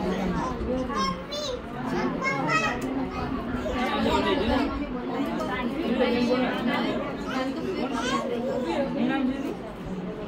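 Many people chattering at once, overlapping voices that are mostly women's, with children's voices among them.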